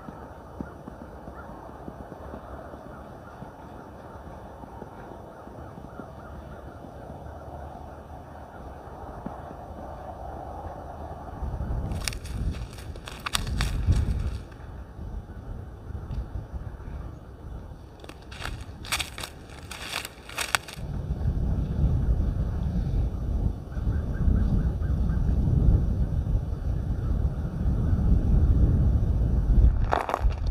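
Wind on the microphone: a low rumble that becomes strong in the last third. Two short clusters of sharp crackling clicks come about twelve and nineteen seconds in.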